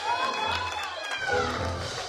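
Church worship music: a woman's voice in long, gliding phrases over low bass notes.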